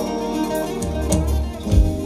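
Live Turkish folk band playing an instrumental passage between sung lines: bağlama and electric guitar over a drum kit keeping a steady beat, with a low bass line.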